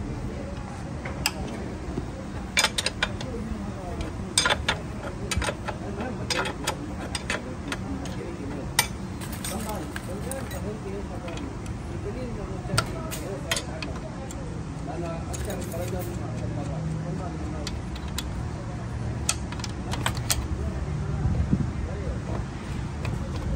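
Scattered sharp metallic clicks and clinks of hand tools (socket, extension and wrench) on the chain adjuster bolt at the end of a Honda CBR600 swingarm, coming in short clusters over a steady low hum.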